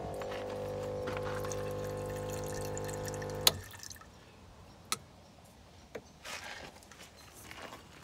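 A small electric water pump hums steadily while water runs from an external tap into a saucepan. The pump stops abruptly with a click about three and a half seconds in, followed by a few light knocks as the pan is handled.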